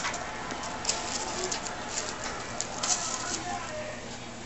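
Thin plastic bag rustling in short, irregular crackles as kittens wrestle on and against it.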